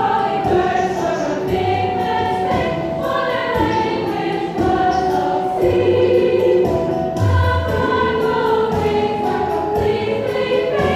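High school mixed chorus of women's and men's voices singing a chordal passage, with held notes that step to new pitches about every second.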